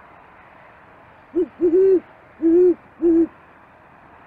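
Great horned owl hooting: five deep hoots of steady pitch over about two seconds, a short first note, a quick pair, then two longer hoots.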